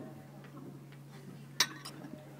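Two sharp clicks about a quarter of a second apart, the first loud, about a second and a half in, over a low steady hum.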